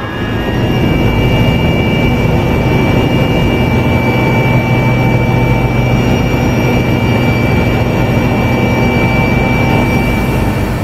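Helicopter turbine and rotor running at takeoff power, heard from inside the cabin as it lifts off: a loud, steady drone under a constant high turbine whine.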